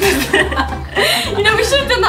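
People chuckling and laughing, with bits of unclear talk.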